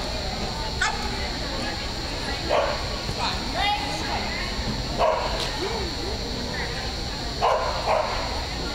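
A dog barking several times over steady arena background noise, the loudest barks about two and a half seconds apart.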